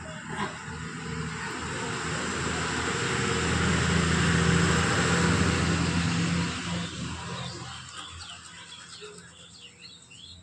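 A motor vehicle passing by, its engine hum and road noise swelling to a peak about halfway through and then fading away. Birds chirp near the end.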